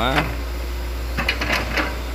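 Hitachi crawler excavator's diesel engine running steadily with a low, even hum while the machine works soil with its bucket.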